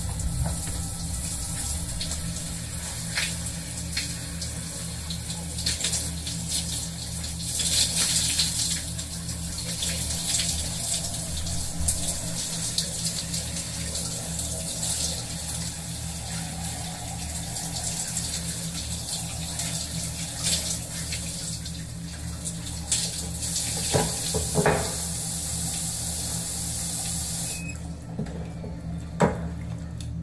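Water falling in a steady stream, like a running shower, with a low steady hum underneath. The water cuts off suddenly near the end, with a few sharp clicks around then.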